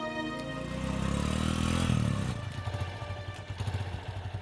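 Motorcycle engine approaching, its pitch rising over the first two seconds, then dropping as the bike slows. It settles into a low, evenly pulsing beat as the motorcycle rolls to a stop.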